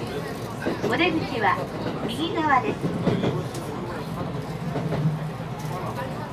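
Electric commuter train running, heard from inside the driver's cab: a steady low hum and rolling noise that swells about three seconds in, under voices.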